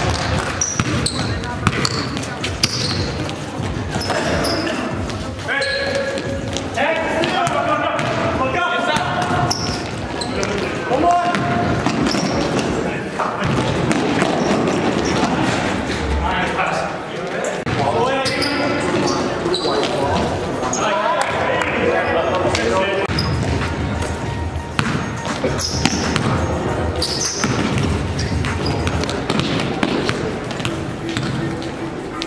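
Basketball being dribbled and bounced on a hard gym court, with players' voices calling out, all echoing in a large gymnasium. Short sharp sounds are scattered throughout.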